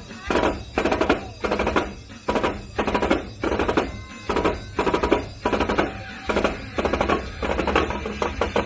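Three marching snare drums played together in a drumline routine: short bursts of rapid strokes and rolls, about two bursts a second.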